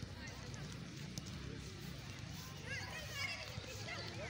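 Faint, distant voices of people across an open sports ground over steady outdoor background noise, with no nearby speech.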